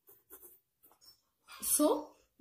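Ballpoint pen writing on paper: faint, short scratching strokes that stop about a second and a half in.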